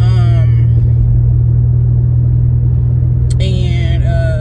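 Steady low drone of a moving car, heard from inside the cabin.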